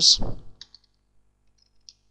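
A man's speech trails off, then a few faint computer keyboard clicks follow: two quick ones just after half a second in and one more near the end.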